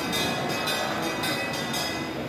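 Temple ritual music: a dense, steady din with a high clash repeating about twice a second, like cymbals keeping time.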